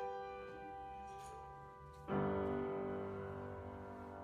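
Solo piano played slowly: notes ringing and fading, then a fuller chord struck about two seconds in and left to sustain.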